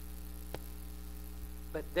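Steady electrical mains hum, a low tone with a ladder of higher overtones, with one faint click about half a second in. A man's voice starts just before the end.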